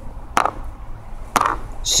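Two sharp knocks about a second apart, from small hard plastic pieces of a toy army men battle game being struck or knocked.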